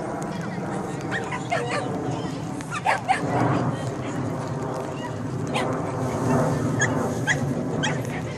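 A dog giving short, high yips and barks several times, in clusters, over a background of people talking.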